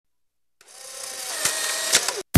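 CD player spinning up a disc: a hissy whirring that fades in about half a second in and grows steadily louder, with a click in the middle and another near the end.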